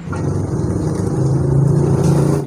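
A motor vehicle engine running and growing steadily louder.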